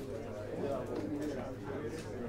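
Indistinct murmur of several voices talking quietly at once over a steady low hum, with no single clear speaker.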